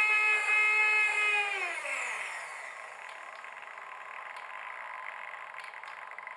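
Small servo motor turning the lead screw of a variable centre-of-gravity unit in an RC glider, driving the ballast to its forward position. It gives a steady high whine that drops in pitch just under two seconds in, then a quieter whirring that carries on to the end.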